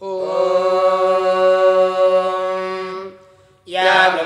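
Vedic Sanskrit mantra chanting: one syllable held on a single steady pitch for about three seconds, then fading away, with the next chanted phrase beginning just before the end.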